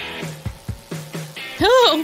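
Upbeat background music with a steady beat. Near the end a woman's voice breaks in with a swooping exclamation.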